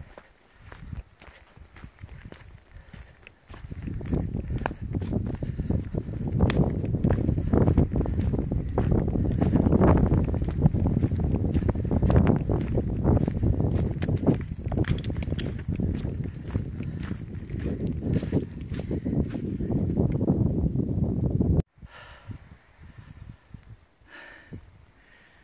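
Wind buffeting a phone's microphone: a loud, irregular low rumble that starts a few seconds in and cuts off abruptly near the end, over footsteps on a dirt and rock trail.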